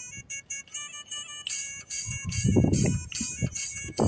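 Haryanvi DJ dance song playing: a high melody of quick, evenly spaced notes, with heavy low drum beats coming in about halfway.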